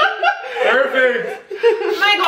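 Women laughing hard together, in high voices.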